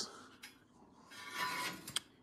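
Metal stock in a storage rack being handled: a brief scraping rustle about a second and a half in, ending in a sharp click.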